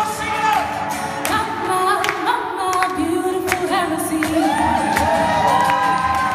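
A live performance with a lead singer and a group of backing singers, a gospel-style choir, singing together, their pitches gliding and overlapping.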